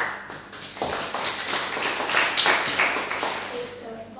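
A small audience clapping by hand. It starts suddenly, is fullest about two seconds in, and dies away near the end.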